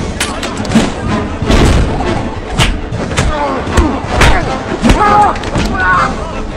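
Hand-to-hand movie fight: about ten punches and body impacts land in quick succession, mixed with men's grunts and shouts of effort, over a music score.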